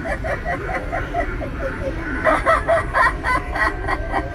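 Halloween animatronic clown's recorded cackling laugh: a run of fast, evenly spaced cackles, then a second, higher burst of laughter about two seconds in, over a steady low background hum.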